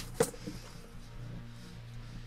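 A man sniffing at a flower, faint nose inhalation over a steady low hum, with one short click just after the start.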